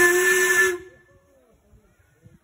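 Miniature steam locomotive's whistle blowing one steady blast with a hiss of steam, cutting off just under a second in.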